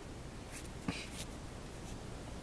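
Thin Bible pages rustling as the open book is handled, in short scratchy strokes with a sharp tap just before one second in.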